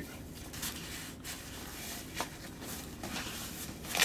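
Faint rustling and a few light clicks as a fabric laptop backpack's pockets and padded flap are handled.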